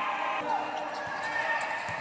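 A basketball dribbled on an indoor gym floor, several bounces, with people's voices in the hall.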